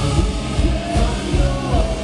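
Live rock band playing loud: electric guitars, bass and drums with a steady beat, and a man singing over them.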